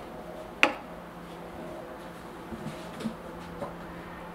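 Light clicks of a metal spoon against a china bowl of melted white chocolate: one sharp click about half a second in, then a few softer taps near the end, over a steady low hum.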